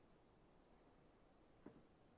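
Near silence: faint room tone, with one soft knock near the end.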